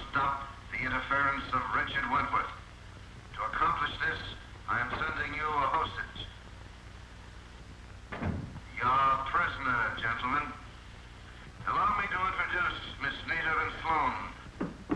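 Speech: a man talking in short phrases with brief pauses, over a steady low hum.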